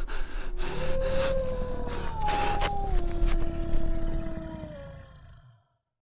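A man's heavy breathing in short noisy breaths over a low rumble, with held tones that step down in pitch a few times, all fading out about five and a half seconds in.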